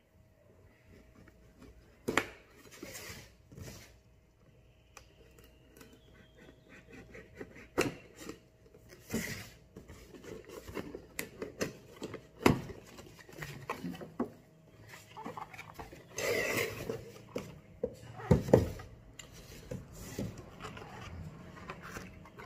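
Cardboard box being slit open with a knife and unpacked by hand: irregular rustling, scraping and sliding of cardboard and packaging, with a few sharp clicks and knocks.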